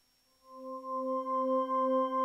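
A hardware synthesizer drone fading in about half a second in: one held low note with bright overtones that swells up over about a second and then sustains steadily.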